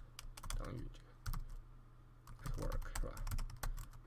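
Computer keyboard typing: clusters of quick keystrokes, busiest in the second half.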